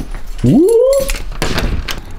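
A door swung open, its hinge giving one rising creak that levels off, followed by a few clicks and knocks.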